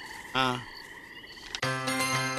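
Frogs croaking in a steady trilling night chorus, with one short spoken sound about a third of a second in. Near the end, music comes in with held notes.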